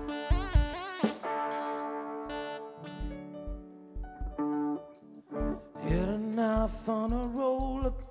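Live band playing a song: electric guitar and keyboard chords with a voice singing, over low thumping beats.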